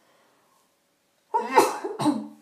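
A woman coughs, starting suddenly about a second and a half in.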